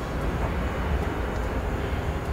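Low, steady rumble of outdoor location background noise, with no music or speech.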